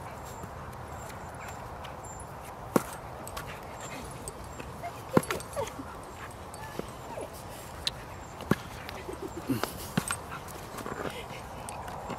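A Staffordshire bull terrier nosing and mouthing a hard plastic ball along the grass: scattered sharp knocks as its muzzle and teeth strike the ball, the loudest about five seconds in, with a few short dog vocal sounds.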